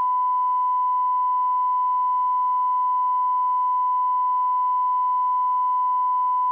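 Broadcast line-up test tone over the end-of-transmission black: one steady pitch held without a break.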